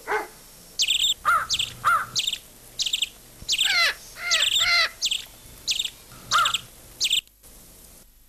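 Birds calling: a run of short, high chirps about two a second, some with lower falling notes. The calls stop suddenly near the end.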